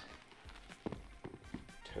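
A few light knocks of Adidas Fear of God Athletics Basketball 1 sneaker soles against a plank floor as the shoes are handled and set down side by side.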